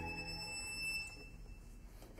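Solo violin holding one soft, high sustained note as the orchestra's preceding chord dies away in the hall's reverberation; the note fades out near the end.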